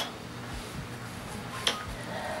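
Faint rustle of long curled hair and clothing as the head is flipped over and the hair shaken out, with one sharp click near the end.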